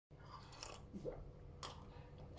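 Faint mouth sounds of someone sipping and swallowing a drink from a cup, with a few short soft noises and one sharper one about one and a half seconds in.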